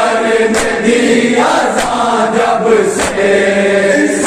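Crowd of male mourners chanting a Shia noha in unison, with the dull hand-on-chest strikes of matam landing together about every second and a quarter.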